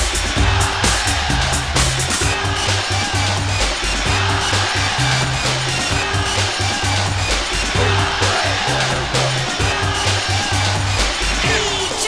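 Early-1990s rave music playing in a continuous DJ mix. A synth bassline steps between a few notes under repeated short synth tones and busy hi-hats, with a steady, even beat.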